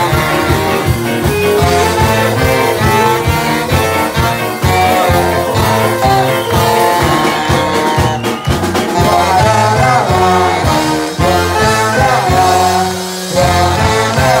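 Live band playing upbeat ska with a saxophone section (alto, tenor and baritone saxophones) over electric guitar and a steady beat, loud throughout, with a brief drop near the end.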